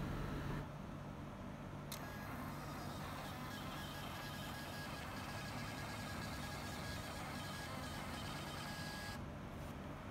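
Panda PRJ-R58B portable 58 mm thermal receipt printer printing a Windows test page: a steady whine of its paper feed starts with a click about two seconds in, runs about seven seconds and stops near the end.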